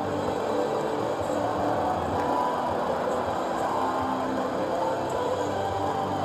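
Steady ballpark background noise: a low hubbub from the stands mixed with faint music, with no distinct events.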